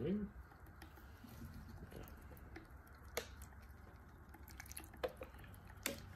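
Magnetic stirrer hotplate running with its stir bar spinning in a glass beaker of picric acid solution: a faint low hum with a few sharp ticks.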